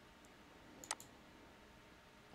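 Two quick computer mouse clicks close together about a second in, otherwise near silence.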